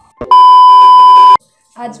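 A loud, steady electronic beep lasting about a second, starting and stopping abruptly: a censor bleep laid over speech.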